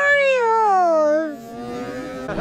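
A man's long, drawn-out vocal exclamation in a high voice, sliding down in pitch over about a second and a half, then fading into a faint steady hum.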